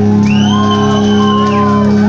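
Live punk rock band holding a sustained closing chord on amplified guitars and bass. Over it a voice shouts one long high whoop that rises, holds and then falls.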